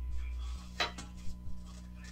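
A few sharp clicks and light clinks of hard objects being handled, the loudest just under a second in, over a steady low hum.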